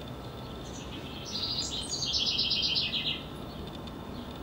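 House wren singing: one fast run of rapidly repeated high notes, about two seconds long, starting a little past a second in.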